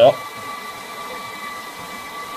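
Hair dryers and heaters running together as a heavy electrical test load: a steady whirring rush of air with faint high whine tones.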